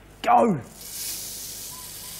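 Dry rice grains poured from glass beakers into glass funnels, streaming down into glass beakers: a steady, even hiss of rushing grains that starts about half a second in, right after a shouted "go!".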